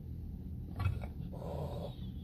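A wary cat making a short, sharp sound about a second in, followed by a brief rough, growl-like noise, over a steady low hum.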